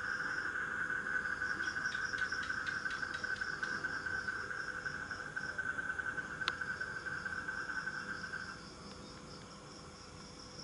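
Night insects calling: a steady trill that stops about eight and a half seconds in, over a higher, evenly pulsing chirp that keeps going, with one sharp click partway through.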